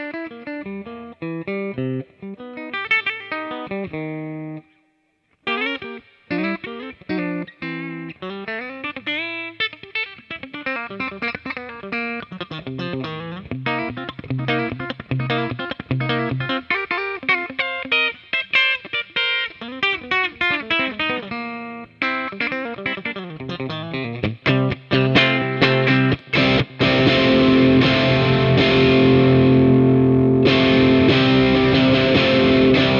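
Fender American Vintage Thin Skin '52 Telecaster played through an amp on its Flat Pole Broadcaster single-coil bridge pickup: picked single-note lines and chord fragments, a brief stop about five seconds in, then louder, fuller sustained chords from about 25 seconds on.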